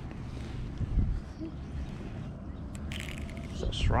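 Low, uneven rumble of wind on the microphone over open water, with a single thump about a second in. A voice calls out at the very end.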